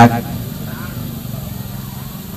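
The tail of a man's word through a PA loudspeaker, then a pause filled by a steady low hum and faint voices in the background.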